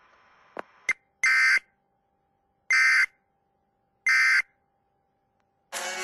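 Emergency Alert System end-of-message data signal: three short, identical bursts of raspy digital warble, each under half a second, about a second apart, marking the end of the tornado warning. Music begins near the end.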